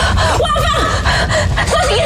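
A woman shouting in a high, strained voice with gasping breaths, in two short outbursts. A steady low rumble runs underneath.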